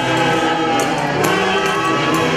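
Live tunantada dance music: long held melody notes that glide slightly in pitch, over a steady accompaniment.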